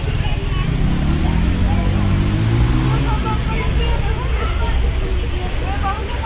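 Busy outdoor city ambience: a steady low traffic rumble, with one vehicle's engine rising in pitch through the first half. People's voices and many short high chirps sit over it.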